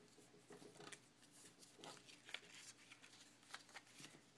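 Faint crackling and rustling of origami paper being folded and creased by hand, in a few short spells.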